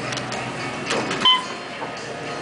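Elevator car push-button pressed: a few soft clicks, then a short, high electronic beep about a second in.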